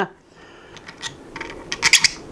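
A coupler being slid onto the central rod of a small 3D-printed wind turbine rotor: light clicks and rubbing of the parts, with a quick run of clicks near the end.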